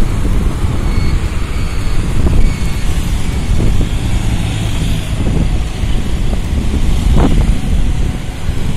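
Wind rumbling over a mobile phone's microphone on a moving motorbike, over steady road traffic noise.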